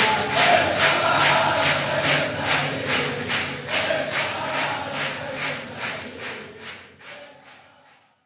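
A large crowd clapping in unison, about three claps a second, at the end of a chant. A few voices carry on in the first second, and the clapping fades out to silence near the end.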